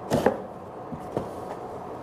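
Objects knocking against a cardboard box as things are packed into it: two sharp knocks close together just after the start, then two lighter knocks about a second in.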